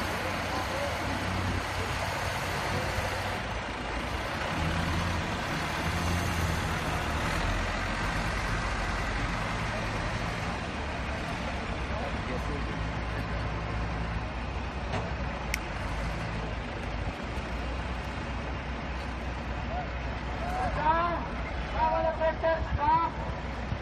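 Backhoe loader's diesel engine running steadily as the machine works and drives over loose soil with its front bucket.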